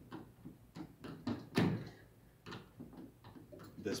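Canopy brackets on an aluminium slider rail along a plastic pedal boat's side clicking and knocking as they are handled and positioned: a handful of light clicks, with one louder knock about a second and a half in.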